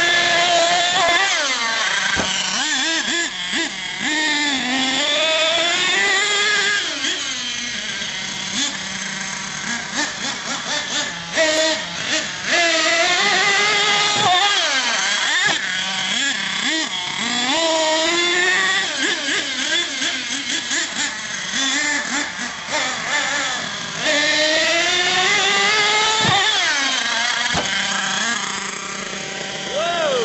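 Small nitro engine of a radio-controlled monster truck running and revving up and down as it is driven, its pitch rising and falling again and again.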